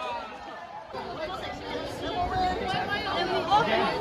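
Group chatter: several young people talking over one another at once, with no single voice standing out.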